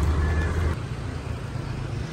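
Steady outdoor background noise with a low rumble that drops away under a second in, at about the moment the picture changes.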